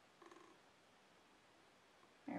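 Near silence: room tone, with one faint short sound about a quarter second in.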